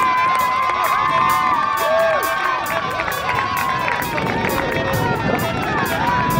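Soccer spectators and players cheering and shouting after a goal, many voices at once with one long held shout, over a steady beat of background music.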